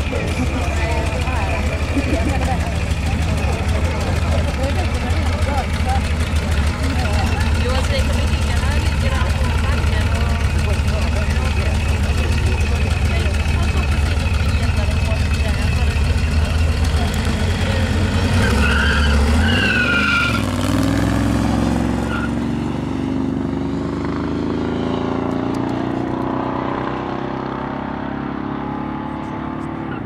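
Drag-race cars at the start line idling with a deep, steady rumble; about nineteen seconds in comes a brief squeal and the launch, and the engines then rise in pitch as the cars accelerate away down the strip and grow fainter.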